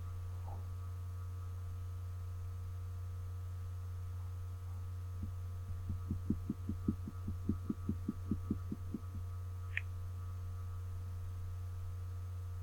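Steady low electrical hum from the recording setup, with a run of soft low thumps, about four a second, for a few seconds in the middle and one brief faint high blip shortly after.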